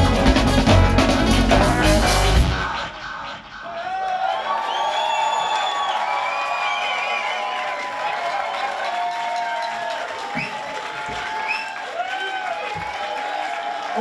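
A live band with drum kit plays its final loud bars and stops abruptly about two and a half seconds in. An audience then cheers and whoops, with many rising and falling shouts over applause.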